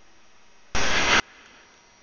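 A half-second burst of hiss-like noise that starts and stops abruptly, over faint background hiss.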